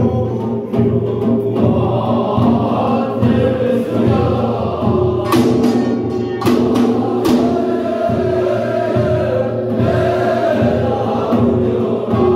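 Korean binari, a chanted shamanic-style blessing song, sung in long held notes over hand-held buk drums, with sharp percussion strikes around the middle.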